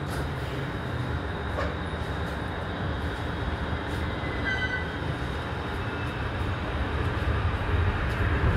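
Korail Line 1 electric train with a Toshiba IGBT VVVF inverter drive pulling out of a station: a steady low rumble with a faint high inverter tone. A brief cluster of high electronic tones comes about halfway through, and the sound grows louder near the end as the train gathers speed.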